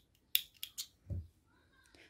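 Small red-handled scissors snipping a fine crochet thread: one sharp snip about a third of a second in, followed by a few lighter clicks of the blades, then a soft thump a little after a second.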